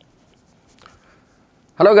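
Faint footsteps and scuffs of a person walking into a small room, with one slightly louder scuff a little under a second in; a man's voice begins near the end.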